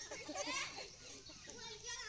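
Indistinct voices of people, children among them, talking in the background, fading in the second half.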